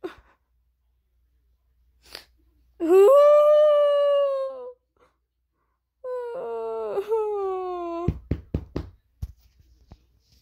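A child's voice wailing in two long drawn-out cries, the first held steady, the second sliding down in pitch. A few quick soft thumps follow near the end.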